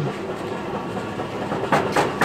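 Stacked galvanized steel bins rattling and knocking together as one is handled, with a sharp metallic clank near the end, over steady background noise.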